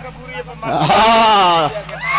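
A man's drawn-out, wavering vocal wail of about a second, starting just over half a second in: a comic mock crying in a staged story.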